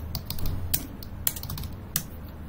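Typing on a computer keyboard: a run of irregular keystroke clicks, with a low steady hum underneath.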